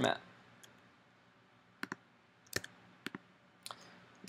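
A few separate sharp clicks of computer keyboard keys, about four, struck one at a time with pauses between them, as keyboard shortcuts are pressed.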